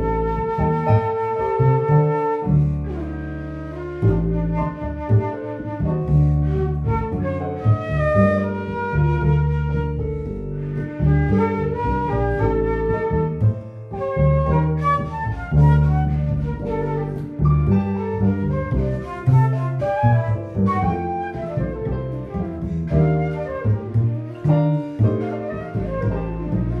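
Jazz trio playing: a concert flute carries the melody over an upright double bass and a Roland V-Piano digital piano.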